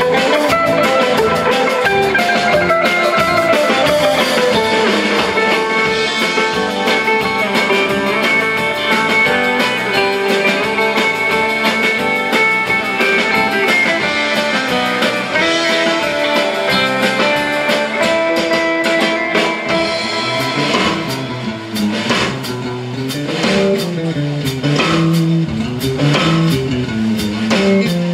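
Live instrumental rautalanka: a twangy electric lead guitar melody over electric bass and drum kit. From about twenty seconds in the band thins out and the electric bass takes a solo line.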